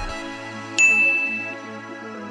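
A single bright ding sound effect about a second in, ringing out for under a second, over soft background music.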